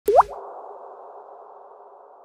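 Audio logo sting: a quick upward-sliding blip at the very start, followed by a soft hum that slowly fades away.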